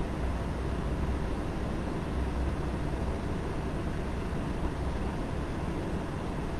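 Steady low rumble with a faint hiss over it, unchanging throughout.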